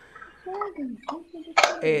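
Voices talking, quiet at first and louder near the end, with a brief light clink about a second in.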